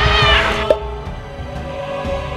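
A cartoon lion's roar given as a short, high cry that falls in pitch and lasts about half a second, over background music. A small pop follows just after.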